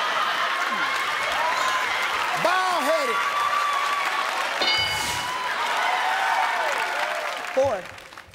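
Game-show studio audience applauding and cheering, with shouts and whoops rising and falling over the clapping. About halfway through comes a short high electronic chime, the game board revealing the answer. The crowd noise drops away near the end.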